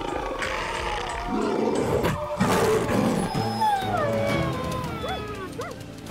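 Cartoon wolves snarling and growling, with a big cat's growling among them, then several falling whines in the second half.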